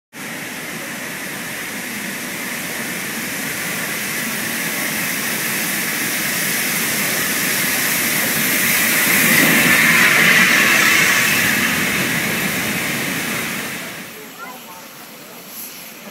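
LMS Royal Scot Class No. 46115 Scots Guardsman, a three-cylinder 4-6-0 steam locomotive, hissing steam loudly and steadily as it draws through the station. The hiss swells to its loudest about ten seconds in and dies away about fourteen seconds in.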